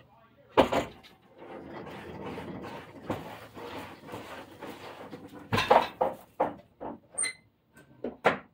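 A toy hauler's rear ramp door being lifted shut by hand: a loud knock, then a few seconds of steady creaking and rattling as the ramp swings up, then a series of clunks and knocks as it closes against the trailer and is latched.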